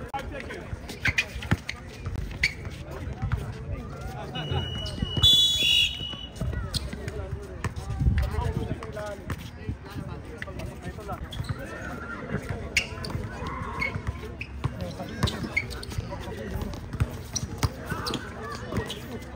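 A basketball bouncing repeatedly on an outdoor hard court during a game, with players calling out, and a brief high-pitched sound about five seconds in.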